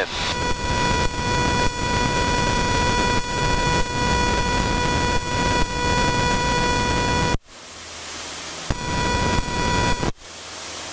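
Light aircraft cockpit noise, engine and airflow heard through the intercom, with a steady high stall warning horn sounding during a practice stall. Both cut out abruptly about seven seconds in, and the horn comes back faintly near the end.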